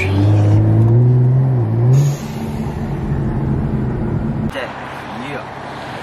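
Tuned BMW M235i's turbocharged inline-six heard from inside the cabin, accelerating with a rising pitch for about two seconds, then running steadily. The engine sound cuts off abruptly about four and a half seconds in, leaving road noise.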